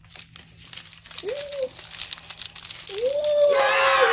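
Clear plastic wrapping crinkling in short crackles as it is handled and pulled open around a fruit daifuku.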